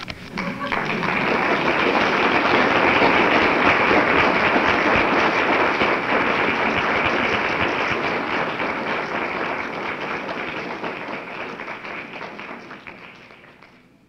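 Audience applauding at the end of a poetry reading, swelling in the first few seconds, then slowly fading away near the end.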